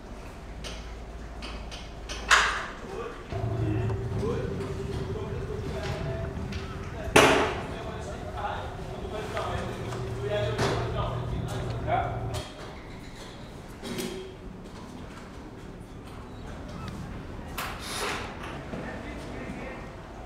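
Low, steady hum of a small boat's motor, with indistinct voices and a few sharp knocks, two of them loud, about two and seven seconds in.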